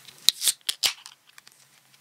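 A drink can being opened by its pull tab: a quick run of four or five sharp metallic clicks and snaps in under a second.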